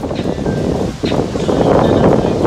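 Wind buffeting the microphone over the wash of rough sea surf, loud and ragged.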